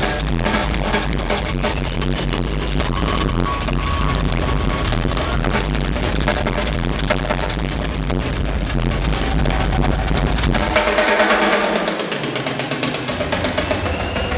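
Live rock drum solo on a full drum kit: rapid strokes across drums and cymbals over a steady bass drum. About ten seconds in the bass drum drops out for a couple of seconds, then rapid strokes resume.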